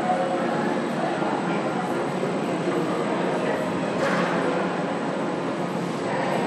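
Steady rumbling background noise of a large indoor arena, with a brief louder rush about four seconds in.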